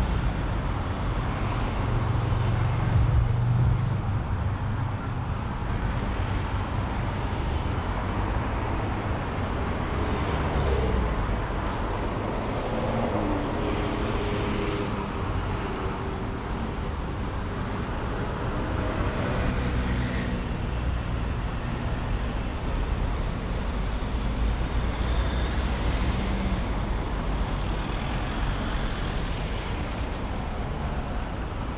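Busy city road traffic: cars, a black cab and vans passing and pulling away from traffic lights, a steady rumble of engines and tyres with a few louder swells as vehicles go by.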